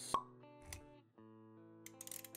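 Intro music of sustained notes, with a sharp pop just after the start and a softer thud about three quarters of a second in, as sound effects for an animated logo.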